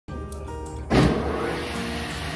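Meat bandsaw's electric motor switching on about a second in, starting loudly and then running steadily, over background music.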